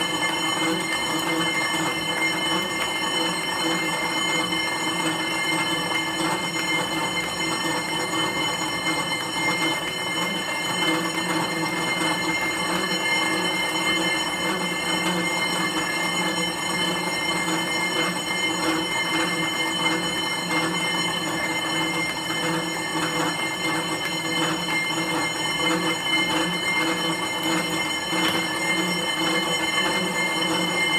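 Stationary exercise bike running steadily under hard pedalling: a continuous mechanical whir with several fixed high-pitched tones and a slight rhythmic pulse underneath.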